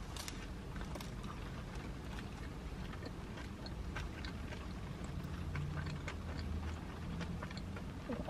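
Quiet car interior: a low steady hum, a little stronger past the middle, with faint scattered ticks like light rain drops on the car body, and soft chewing.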